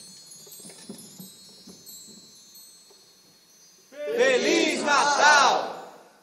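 A faint ringing tail fades for about four seconds, then a bright, shimmering burst of chimes starts suddenly and runs for about two seconds before being cut off.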